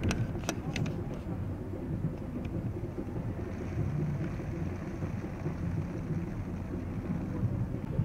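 Steady low rumble of outdoor background noise, with a few sharp clicks in the first second and faint voices.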